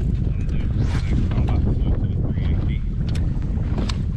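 Wind buffeting the microphone on open water, a steady low rumble, with a few faint clicks near the end.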